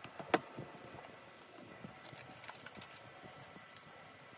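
Handling of a cardboard iPad box: one sharp tap about a third of a second in, then faint, scattered ticks and light taps of fingers and nails on the box.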